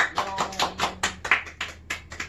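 A few people clapping their hands together, a quick, even run of about four or five claps a second.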